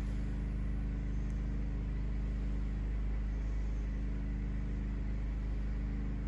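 A steady low mechanical hum that holds at one pitch and level throughout, with no footsteps or uniform snaps standing out above it.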